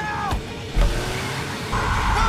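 Film soundtrack: music with sliding notes, cut by a sudden loud, heavy crash about a second in as the car hits, then a man screaming near the end.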